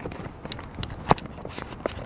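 A few light, irregular knocks and clicks from footsteps shifting on wooden deck boards.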